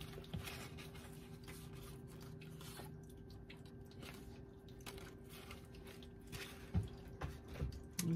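Round cardboard fortune cards being laid one by one on a cloth-covered table: faint taps and rustles over a steady low hum, with a couple of soft thumps near the end.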